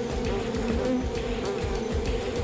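A huge swarm of honeybees buzzing in a steady drone.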